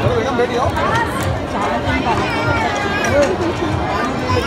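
Crowd chatter in a busy banquet hall: many voices talking at once, with a few nearer voices rising above the steady babble.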